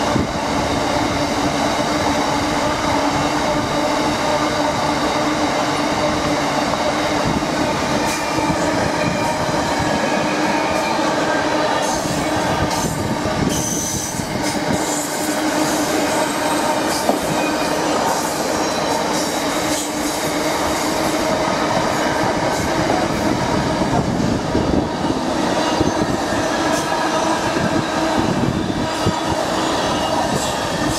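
Intermodal freight train of container flat wagons passing at speed: a steady, loud rumble of wagon wheels on the rails. Over it rings a steady metallic squeal from the wheels on the curve, with a few sharp clicks along the way.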